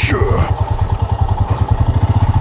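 Royal Enfield Himalayan's single-cylinder engine pulling steadily through a rut, a fast, even beat at constant revs.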